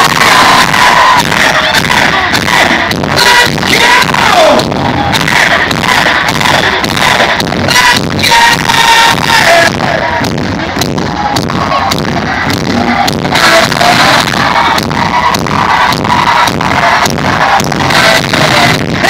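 Live metal band playing loud in an arena, heard from the audience through a phone's microphone: a steady pounding drum beat under distorted guitars.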